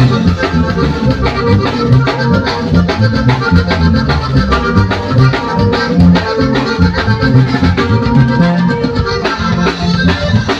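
Live norteño band playing an instrumental passage: a Hohner button accordion leads the tune over a moving bass line, strummed guitar and a drum kit keeping a steady beat.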